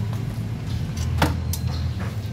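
Two sharp metallic clicks about a third of a second apart, from hand handling at the cordless screwdriver's bit holder after a screw has snapped in hardwood, over a low steady hum.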